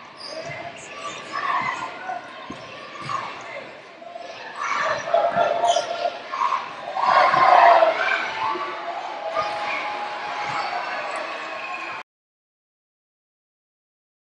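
Basketball game sound: a ball bouncing on the hardwood court amid voices, growing louder around five to eight seconds in. The sound cuts off suddenly about twelve seconds in.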